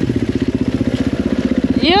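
Dirt bike engine running at low revs through mud, a steady fast chugging pulse. A rider's shout starts right at the end.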